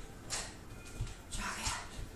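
A woman's sharp, breathy exhalations, each lasting about a third of a second and timed with kickboxing strikes: one just after the start and another a little past the middle. Soft low thuds of bare feet landing on an exercise mat sound underneath.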